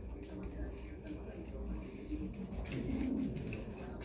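Two dogs, a husky-type dog and a pug, growling in play as they tug at a stuffed toy monkey, the loudest low growl about three seconds in.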